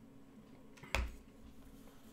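A single short knock with a dull thump about a second in, as a drinking glass is set down on the desk, over faint room tone with a low steady hum.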